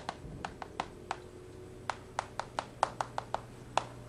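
Writing on a classroom board: a quick series of short, sharp taps as the strokes are made, with a pause of about a second near the middle.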